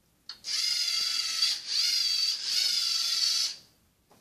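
Electric drive motors of a small programmed classroom robot whining as it drives across the mat, in three stretches with two short dips between its moves, cutting off near the end.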